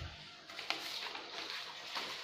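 Sheet of paper rustling as it is handled and lifted, with a small click under a second in.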